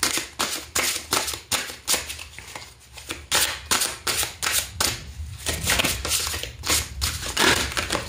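A large deck of Tarot of Mystical Moments cards being shuffled by hand, overhand: a run of quick, irregular papery slaps and rustles, easing for a moment in the middle.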